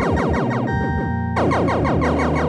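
Sequenced electronic music from a VCV Rack virtual modular synth patch built around the Valley Terrorform voice: a fast run of short notes, each falling in pitch, about eight a second, over held tones. The run thins out a little past halfway and comes back in full about three quarters of the way through.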